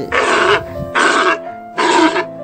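Three short, rough animal calls, each about half a second long and about a second apart, played as a sound effect over background music with steady held notes.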